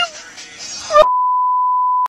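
A steady, single-pitched electronic bleep tone comes in with a sharp loud onset about a second in and holds level until it cuts off abruptly at the end.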